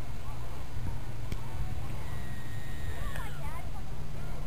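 Wind rumbling on the microphone, with faint distant voices or chirps. Past the middle a high steady whine holds for about a second, then falls in pitch and breaks up.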